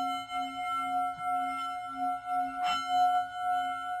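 A singing bowl rings on with a slow wavering pulse, and is struck again nearly three seconds in.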